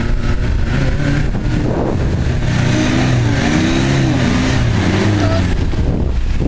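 A 4x4's engine revs up and then back down under load while a stuck vehicle is pulled out of mud on a tow strap, over a heavy low rumble.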